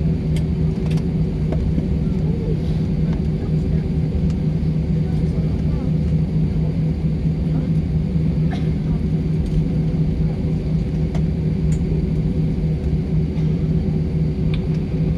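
Airliner cabin noise during the landing rollout: a steady low rumble from the engines and the wheels on the runway, with a constant hum underneath.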